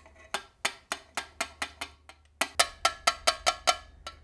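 A brass laboratory sieve being tapped to knock fern spore out into a glass funnel: a run of light, ringing metallic taps, then after a short pause a faster run of taps.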